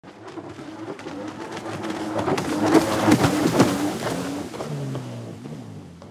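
A vehicle-like engine sound that swells up, peaks about three seconds in, and fades away, its pitch dropping lower near the end, with crackling clicks through the loudest part.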